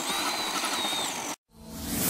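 Traxxas Summit electric RC truck's motor whining at a high, slightly wavering pitch. It cuts off abruptly after about a second and a half, and a rising whoosh with music starts near the end.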